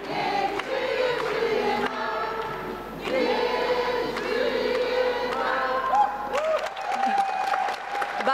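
A large audience singing a birthday song together in held notes, with scattered clapping joining near the end.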